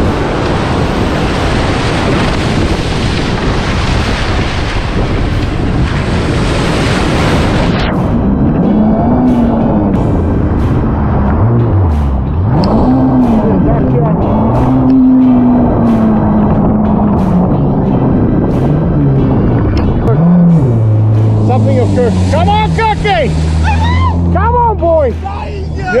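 Jet ski engine revving up and down again and again as it punches out through the shore break. For the first several seconds a loud rush of surf and spray on the mounted camera's microphone covers it.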